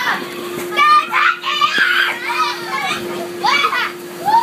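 Children shrieking and shouting excitedly in high voices, in several bursts, over a steady faint hum.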